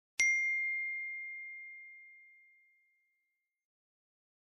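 A single bell-like ding, struck about a quarter second in: one clear high tone that rings on and fades away over about three seconds. It is the closing chime of the Cockos logo sting.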